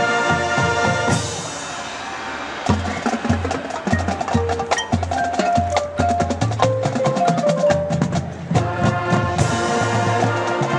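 High school marching band playing its field show. A brass chord cuts off about a second in, then comes a percussion passage of rapid drum strokes and low drum notes with a few mallet-keyboard notes, and the full band with brass comes back in near the end.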